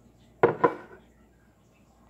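Two quick knocks of kitchenware on the countertop about half a second in, as the blender jar full of milk and fruit is picked up, with a brief ring after them.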